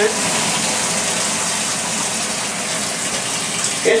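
Tap water running steadily in a bathroom. It is controlled by the sink faucet, which abnormally also works the bathtub's water supply; the cause of this cross-connection is not yet known.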